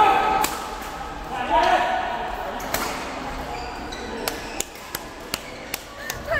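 Badminton rackets striking a shuttlecock: sharp, irregular cracks echoing in a large indoor hall, with players' voices calling out in the first two seconds.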